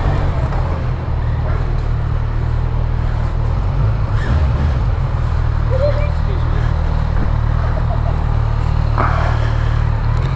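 Steady low engine drone filling a ferry's enclosed vehicle deck, unchanging throughout.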